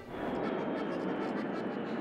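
Jet aircraft flying high overhead, heard from the ground as a steady rushing noise with no sharp boom.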